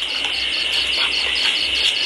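Insects chirping: a steady high-pitched trill with a short pulse repeating about seven times a second.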